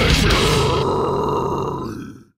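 A brutal death metal song ending live: the drums and cymbals stop about half a second in, and the guttural vocal and down-tuned seven-string guitars hold one last note that fades out near the end.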